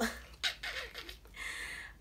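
A woman's short laugh, then faint rustling of fabric as a garment is handled and unfolded.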